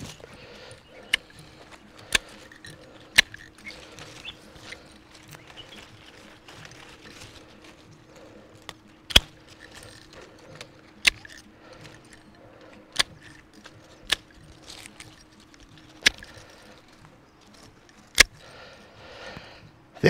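Hand pruning shears snipping grapevine canes: about nine sharp single clicks, one to two seconds apart, with a longer gap in the middle.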